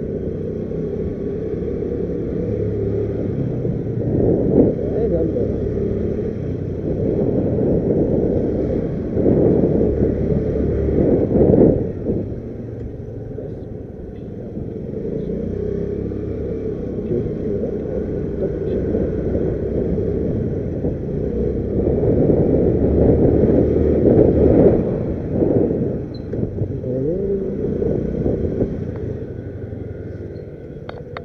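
Motorcycle riding slowly with its engine running and wind buffeting the microphone, a continuous low rumble that grows louder in two stretches.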